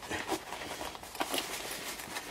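Faint rustling of a canvas guitar gig bag as its zip is worked by hand, with a few soft clicks.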